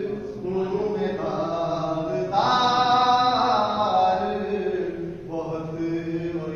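A man reciting a manqabat, an Urdu devotional poem in praise of the Imam, in an unaccompanied melodic chant. His phrases are drawn out into long held notes, with the loudest phrase starting about two seconds in.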